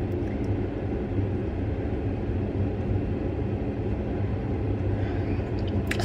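Steady low rumble of background noise, even throughout with no strokes or changes.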